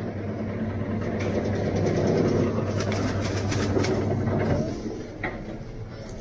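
A steady low machine hum that fades out after about four and a half seconds, with light crackling of plastic packaging midway.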